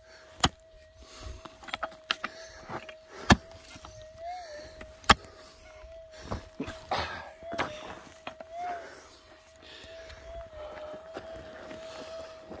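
A Minelab GPZ 7000 metal detector holds a steady tone, wobbling up in pitch briefly twice. Over it come sharp strikes of a pick digging into hard, gravelly clay, three loud ones early and middle, followed by softer knocks and scraping of loose dirt.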